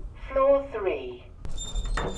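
A short muffled voice sound from inside the closed lift, then, about one and a half seconds in, a click at the lift door's latch followed by a brief thin high-pitched tone.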